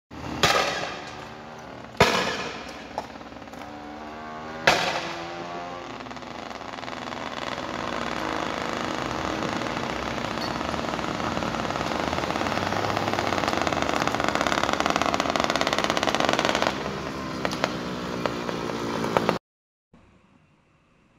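Three loud bangs about two seconds apart in the first five seconds, each ringing out, consistent with tear-gas launches during a police clearing of a road blockade. A vehicle's engine noise then builds up and holds until a drop near the end, with a few smaller pops before the sound cuts off.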